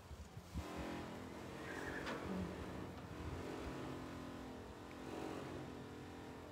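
Steady buzzing hum of wind blowing through a metal indoor riding arena, rising in about half a second in and holding on one even pitch.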